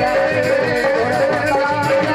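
Live Indian devotional bhajan music: a man singing a wavering melody over fast dholak drumming, with a steady note held underneath throughout.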